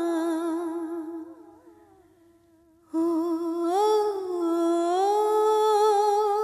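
Background score of a woman's voice humming a slow, ornamented melody. It fades out a little over a second in, and after about a second of near silence a new, held phrase begins.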